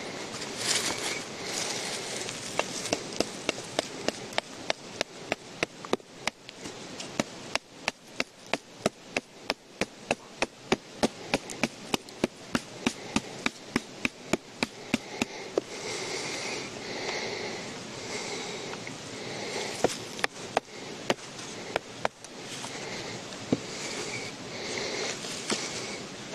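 A wooden mallet knocking on a knife's spine, batoning the blade into a wooden stick. It goes as a quick, even run of about three knocks a second, then a pause, then a few harder, spaced knocks near the end.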